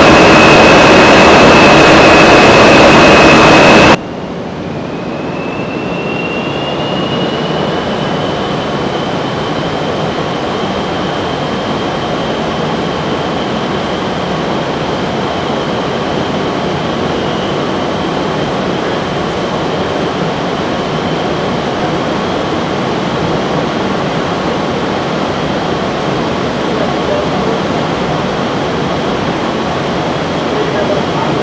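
Full-scale wind tunnel running: a loud, steady rush of air with a high whine. About four seconds in it cuts to a quieter stretch where the whine rises in pitch, then holds steady over the continuous airflow.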